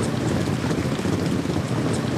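Steady rushing outdoor background noise, much like wind or rain on the microphone, with no clear hoofbeats or cheering standing out.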